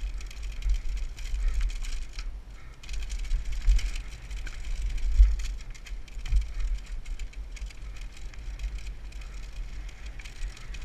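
Downhill mountain bike ridden fast over a rough dirt and rock trail, heard from a helmet camera: wind buffets the microphone while the tyres crunch over the ground and the bike clatters over bumps, with a few sharper knocks about five and six seconds in.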